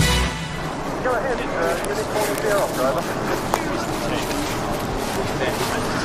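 The last moment of a TV drama's theme music cuts off just after the start. Steady outdoor background noise follows, with faint indistinct voices.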